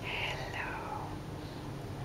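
An adult whispering softly to a sleeping baby to wake him: a breathy, hissing whispered word just after the start, sliding down in pitch, over a faint steady hum.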